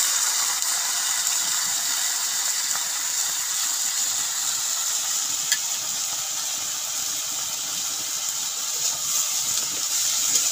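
Freshly added chopped leafy greens sizzling in hot oil in a wok, a steady hiss that began as they hit the pan, with one light tick about halfway through.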